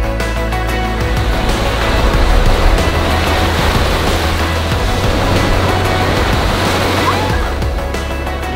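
Background music over surf washing in on a sandy beach. The wash of the waves swells after about a second and fades near the end.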